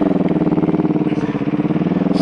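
Motorcycle engine running while riding, a steady pulsing note that eases slightly in pitch near the start and then holds even.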